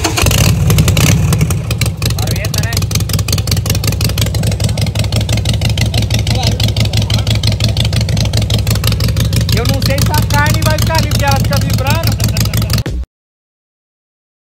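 Harley-Davidson V-twin engine running loud with a rapid, even exhaust beat, revved up briefly at the start and then held steady; it cuts off suddenly near the end.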